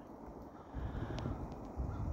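Low rumble of wind on the microphone, growing stronger about three quarters of a second in, with a couple of faint ticks.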